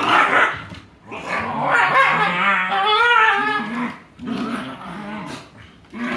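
Shiba Inu dogs play-fighting, growling and barking, with one long, wavering vocal in the middle that rises in pitch before falling back.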